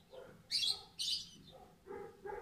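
A small bird chirping a few short times in the background.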